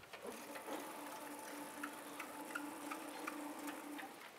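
Motorized sliding chalkboard panel rising: a steady motor hum that starts just after the control button is pressed and stops near the end, with light regular ticks about three a second.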